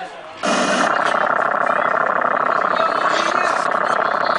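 A long, loud fart noise with a rasping, buzzing texture. It starts suddenly about half a second in and runs on steadily without a break.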